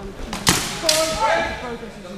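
Sword exchange in a HEMA bout: two sharp cracks of the swords striking, about half a second in and again about a second in.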